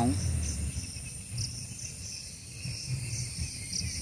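Insects chirping steadily: a continuous high-pitched whine with a pulsing chirp repeating beneath it, over a low rumble.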